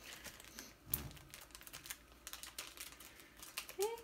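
Small plastic packaging being handled: light clicks and crinkles of bagged jewellery parts being set down and picked up, with a soft knock about a second in.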